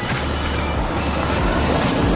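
Pickup truck driving past on a loose gravel road: engine rumble with the crunching and rattle of tyres over stones.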